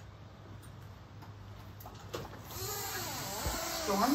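Quiet outdoor background, with a steady hiss that grows louder a little past halfway and a faint voice murmuring near the end.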